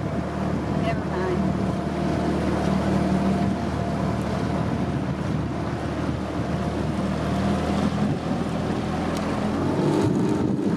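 Small motorboat's engine running steadily as the boat cruises along, a constant low hum.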